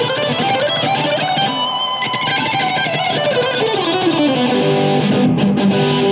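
Ibanez electric guitar played through a Blackstar amp: a fast solo lick, a quick run of notes climbing, then a long falling run, ending on longer held notes.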